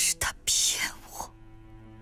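A woman speaks a short line in a hushed, breathy voice over a held low cello note from the score; her voice stops a little past one second in and the cello note carries on.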